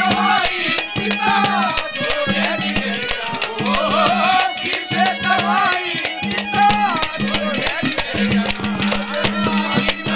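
Live Haryanvi ragni folk music: a sliding, ornamented melody over a harmonium, with steady hand-drum strokes several times a second.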